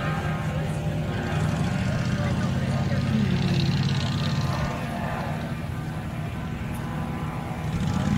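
Legal Eagle ultralight's four-stroke V-twin Generac engine idling on the ground, a steady low drone.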